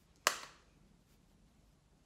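A single sharp click about a quarter of a second in, fading quickly; then only faint room tone.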